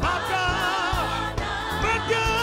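Gospel choir singing a praise song, voices held with vibrato over a steady drum beat.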